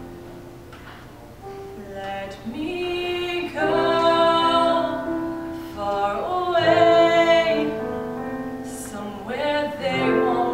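A woman singing a show tune solo in long held notes over keyboard accompaniment; the first second or so is quieter, mostly the keyboard, before her voice comes in strongly.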